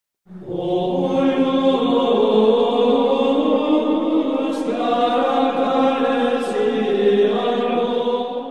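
Sung liturgical chant: voices hold long, sustained notes that move slowly from pitch to pitch, coming in just after the start.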